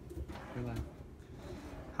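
Faint, low murmured voice in the room, with a short hummed sound about half a second in.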